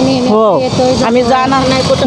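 Women's voices speaking, pitched and continuous, with the steady hum of street traffic beneath.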